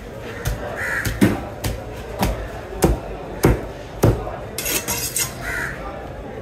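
A large knife chopping down through a fish loin into a wooden cutting block: about seven sharp thuds at a steady pace, roughly one every half second, stopping a little past the middle.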